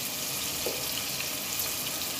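Coated fish fillets frying in hot oil in a frying pan, giving a steady sizzle.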